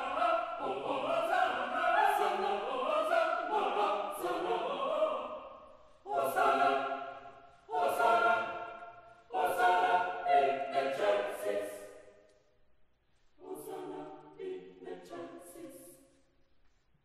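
Mixed choir of men's and women's voices singing sustained chords in phrases broken by short breaths, dying away about twelve seconds in, then a softer closing phrase that stops at the end.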